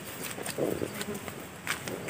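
Faint insect buzzing in open grassland, with a few soft clicks and rustles.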